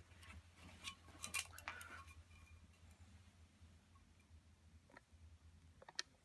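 Faint scratchy clicks and scrapes of a removed ceramic wall tile with old crumbly mortar on its back being handled close up, mostly in the first two seconds, then near silence.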